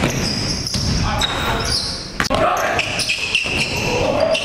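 Basketball game in a gym: the ball bouncing on the hardwood floor with several sharp knocks, and short high squeals typical of sneakers on the court.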